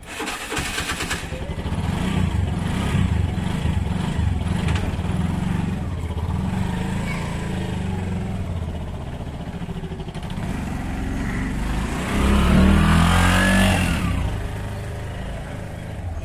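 Auto-rickshaw's single-cylinder engine starting up and running with a rapid putter, then pulling away: the revs climb and it is loudest about twelve seconds in, easing off near the end as it drives away.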